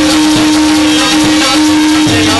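Live stage accompaniment music: a steady held drone note, tabla bass strokes falling in pitch about once a second, and a shaker-like rattle.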